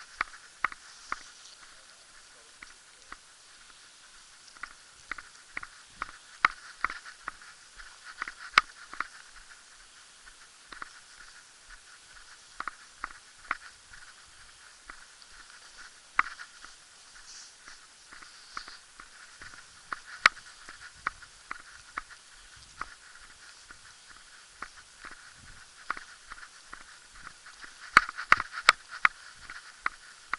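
Footsteps on a paved street with irregular sharp clicks and taps, about one every half second to a second and bunched together near the end, over a faint steady background noise.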